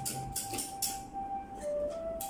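Background music: a held melody note that steps briefly to lower notes, over quick, bright percussion strokes that are thickest in the first second.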